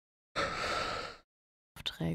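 A man's single breathy exhale, like a short sigh, lasting under a second and cut off sharply at both ends by silence.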